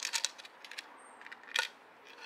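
Metal bolts clinking against each other and a terracotta plant pot as they are handled. A few sharp clicks come at the start and one more about one and a half seconds in.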